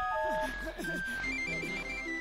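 Cartoon background music: a simple electronic melody of short, pure, ringtone-like notes, with quick high notes stepping through the second half.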